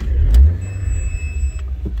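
Audi TT 1.8 T's turbocharged four-cylinder engine heard from inside the cabin: a loud surge about half a second in, then a steady idle rumble. A faint high electronic tone sounds for about a second in the middle.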